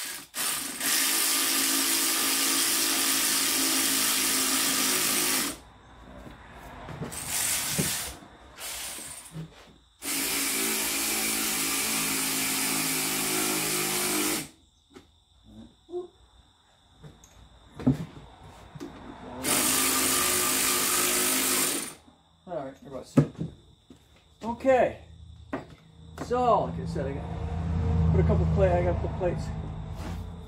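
Power drill running in three long bursts, the first two about four to five seconds each and the last about two and a half, while the brake caliper's bolts are driven back in on the rear hub. Scattered light clicks and knocks of hand tools follow.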